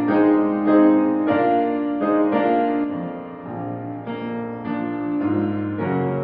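Solo grand piano playing a church prelude, sustained chords with a new chord struck about every second.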